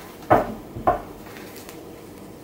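Tarot cards handled on a table: two short, soft knocks about half a second apart as the deck is picked up and tapped, with faint card rustling between them.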